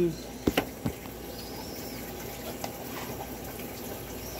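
A few light knocks and clicks about half a second to a second in, from things being handled, over a steady low hiss.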